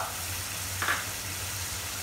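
Tomato-purée masala gravy sizzling in oil in a pan, at a steady level, with a steady low hum underneath.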